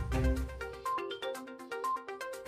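Short electronic channel-ident music: bright, chime-like pitched notes over a steady beat, the heavy bass dropping away about a third of the way in.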